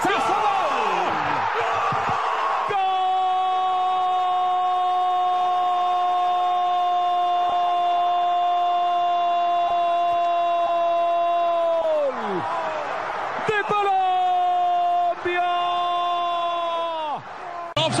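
A Spanish-language football commentator's drawn-out goal cry: a fast build-up, then one long 'gol' held on a single pitch for about nine seconds that drops off at the end, followed by two shorter held cries.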